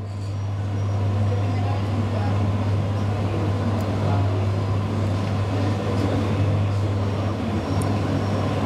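A steady low hum under a constant rushing background noise, unchanging throughout.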